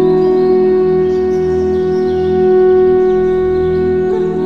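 Relaxation music: an Indian flute holds one long steady note over a low sustained drone, moving to a new note at the very end.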